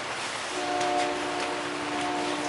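A train horn sounding as a steady chord of several held notes. It starts about half a second in and holds without a break.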